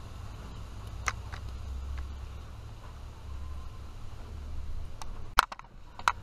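Low steady rumble of wind on the microphone, with a single click about a second in and a few sharp clicks and knocks near the end as the camera is handled.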